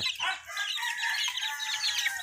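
Month-old gamefowl chicks peeping in quick, high calls, with a longer drawn-out rooster crow through the middle.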